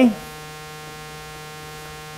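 Steady electrical mains hum, a constant buzzy tone with many even overtones, carrying through the sound system without change.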